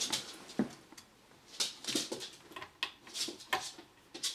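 Faint scattered light clicks and rustles of hands handling parts on a computer motherboard, around the Intel stock CPU cooler and its fan cable.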